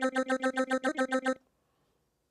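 PPG Phonem vocal synthesizer looping a sung 'dah' syllable in fast, even sixteenth notes, about eight a second, on one steady pitch, with a short upward pitch blip near the one-second mark. The loop stops abruptly about a second and a half in.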